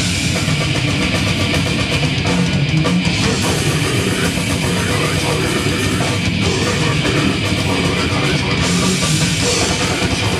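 Heavy metal band playing live: distorted electric guitars and a drum kit, loud and dense, with the cymbals growing brighter about three seconds in and again near the end.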